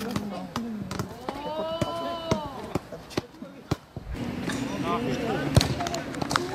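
Sharp knocks of a football being kicked and bouncing on a hard pitch, mixed with people's voices and one long rising-and-falling call about a second and a half in.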